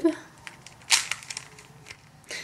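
Plastic puzzle cube being turned by hand: one sharp click about a second in, then a quick run of lighter clicks as its layers turn.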